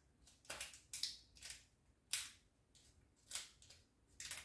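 Foil eye-pad sachets crinkling as they are flipped through one by one in the hands: a series of about six short, irregular crinkles.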